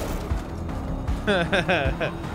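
A man's voice saying a word and laughing, over background music from the episode's soundtrack.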